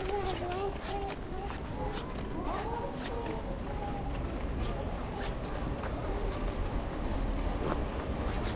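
Footsteps on a paved sidewalk at a walking pace, with people talking in the first half and a steady low background rumble.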